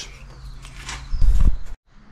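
Handling noise: rustling with a loud low thump a little over a second in, then the sound cuts off abruptly at an edit.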